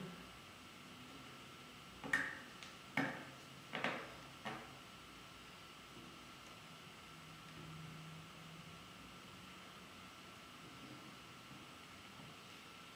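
Laser-cut MDF pieces clicking and knocking as an upright piece is pressed firmly into the slots of the stand's base: about five sharp clicks a second or two apart, between two and five seconds in.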